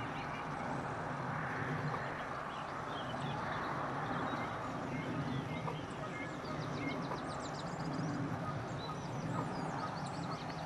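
Outdoor lakeside ambience: a steady low background rumble with small songbirds singing on and off, a run of quick high chirps about seven seconds in.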